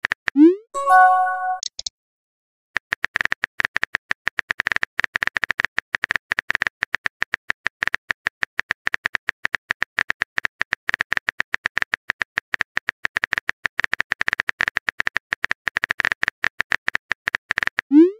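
Phone-keyboard tap clicks in a quick, uneven stream as a long text message is typed. Just before the typing, a short rising swoop followed by a brief chiming tone marks a message being sent, and another rising swoop starts at the very end.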